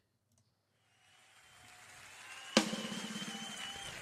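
Near silence, then a Yamaha drum kit starts playing, coming in with a sudden louder hit about two and a half seconds in, with a held high note over it. It is heard as video playback, well below the level of the talk around it.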